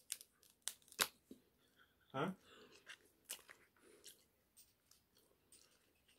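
Boiled shellfish shell being cracked and pulled apart by hand: a few sharp, brief snaps with soft tearing between.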